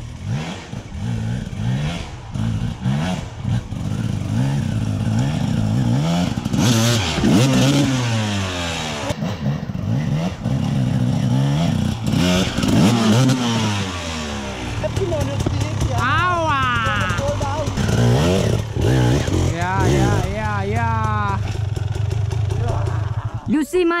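Enduro dirt bike engine revved over and over, its pitch rising and falling, as the bike is ridden over a fallen log. After about fifteen seconds it settles to a steadier lower note, with a few quick blips of the throttle.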